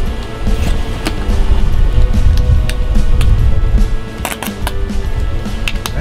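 Wind buffeting the microphone in a heavy low rumble that swells in the middle, over steady background music, with a few short sharp clicks.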